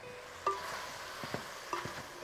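Beef chunks with onion and spices sizzling in a pot as they are stirred with a wooden spoon. A few light knocks of the spoon against the pot come through the sizzle.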